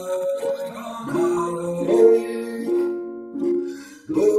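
Ukulele playing a slow chord accompaniment, its notes ringing out and fading between plucks.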